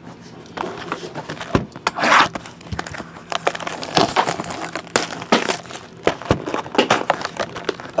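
Plastic shrink wrap being torn off a trading card box and crinkled, with irregular crackles and clicks and a longer tearing rip about two seconds in, followed by the cardboard box being opened.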